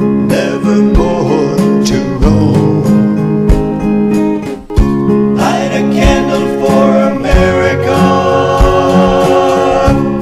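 Country-gospel song with acoustic guitar, a slow steady beat and a singing voice, briefly dropping away a little before halfway.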